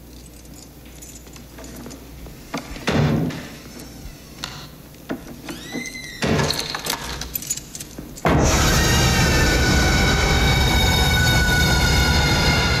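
A horror film's jump-scare sting. After quiet corridor room tone broken by a few scattered knocks and clunks and a brief creak, a sudden, very loud, shrieking chord of stacked high tones bursts in about eight seconds in and holds.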